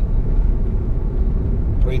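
Steady low rumble of a car's engine and road noise heard from inside the cabin while driving.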